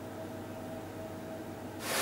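Quiet steady hum of a heating oven with a faint thin whine. Near the end a loud, even rushing noise comes in suddenly: the vacuum cleaner that powers the vacuum-forming rig, running.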